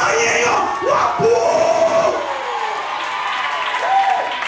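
A woman preacher's voice amplified through a microphone in long shouted calls, one held and sliding down in pitch about two seconds in, over the noise of a congregation.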